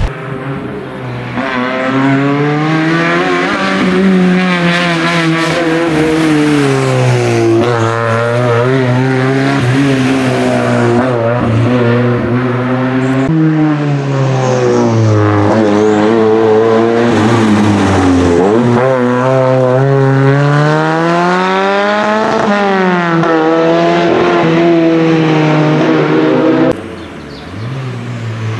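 Ford Sierra rally car's engine at full throttle, its pitch climbing and dropping again and again as it shifts up and down through the gears. The sound breaks off and resumes about 13 s in and again near the end.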